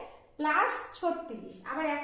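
A woman talking, explaining in Bengali, after a brief pause at the start.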